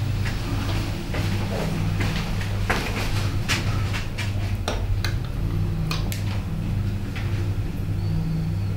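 A spoon clicking and scraping against a glass chutney jar and a plate, a scatter of short sharp clinks, over a steady low hum.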